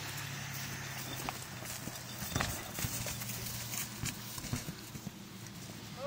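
A horse's hooves thudding on turf in an irregular run of knocks, heaviest a little over two seconds in, over a steady low hum.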